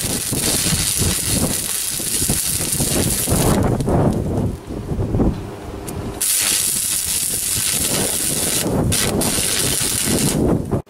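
Stick (arc) welder crackling as a steel plate is welded onto the worn edge of a steel muck spreader body. The crackle drops away for a couple of seconds about three and a half seconds in, then the arc strikes again and it carries on loudly.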